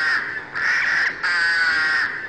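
A run of harsh, crow-like calls in quick succession, each about half a second long: three within two seconds, with brief gaps between them.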